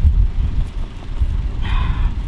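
Wind buffeting the microphone: a loud, uneven low rumble. A brief pitched sound comes near the end.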